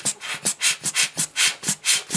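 Rubber bulb air blower squeezed rapidly, giving short hissy puffs of air at about five a second as it blows dust off a camera lens element.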